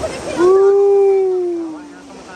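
One long held vocal call, steady in pitch for about a second and then sliding down as it fades, loud over the rush of a rocky stream.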